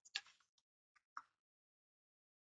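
Faint computer keyboard keystrokes: a quick run of taps at the start, then a few single clicks about a second in.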